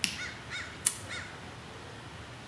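A bird calling three times, short faint calls that each rise and fall in pitch, with a single sharp click just before the middle.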